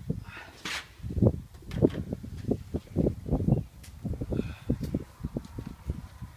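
Gloss paintbrush working along the top of a plastic door frame: a run of soft low knocks and rubs, about three a second, as the brush is stroked up and down.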